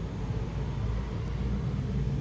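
A steady low background rumble, with no distinct knocks or clicks.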